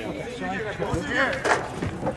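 Men's voices calling out across the pitch, quieter than the shouting around them. A single sharp knock comes about one and a half seconds in.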